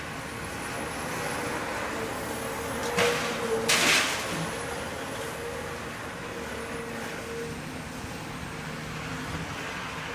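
Heavy demolition machinery running steadily with a held engine tone, broken by two loud, short noisy bursts about three and four seconds in.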